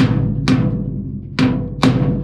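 Hammer blows on the steel side board of a tipping farm trailer, four sharp strikes in two pairs, each ringing briefly like a drum in the hollow sheet-metal wall, over a steady low hum.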